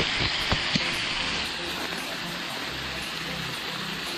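Steady rushing of a waterfall heard from the top of the bluff above it, with a few short crunches in the first second.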